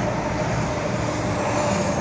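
Steady mechanical hum with a few faint, even tones.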